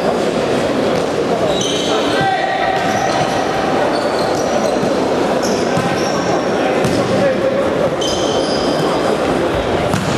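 Futsal play in a reverberant sports hall: players shouting and calling over one another, shoes squeaking briefly on the court floor several times, and the ball being kicked.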